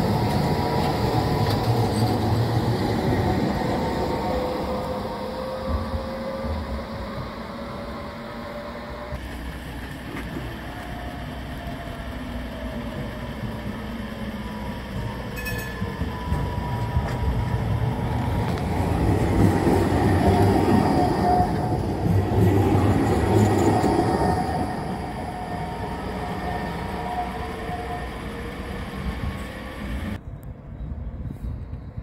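Articulated low-floor electric trams passing on curved track: a rumble of wheels on rail, with thin wheel squeal gliding in pitch as they take the curve. One tram passes right at the start. A second is loudest about 19 to 24 seconds in, with a steadier squeal.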